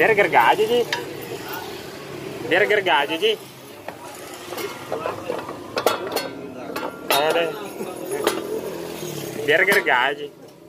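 Metal tools and parts clinking and clicking during hands-on work on a scooter's engine, with a few sharp clicks about six to seven seconds in. Short bursts of a person's voice come and go, the loudest near the start, around three seconds in and at the end.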